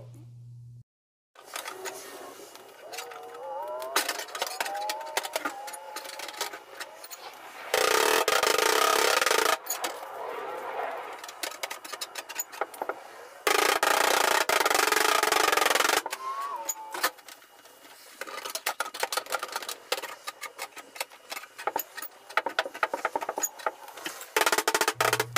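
Truck bedside sheet metal being levered out with a long PDR bar: wavering creaks and squeaks as the panel flexes, then sharp clicks and knocks of the bar and panel. Two loud noisy stretches of about two seconds each break in partway through.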